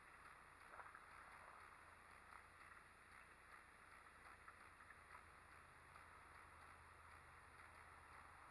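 Near silence: faint outdoor background with a few faint, scattered ticks.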